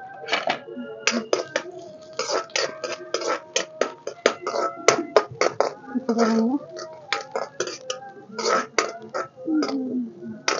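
A metal spatula scraping and knocking against a metal kadhai as chopped onions are stirred in hot oil: an irregular run of sharp clacks, several a second.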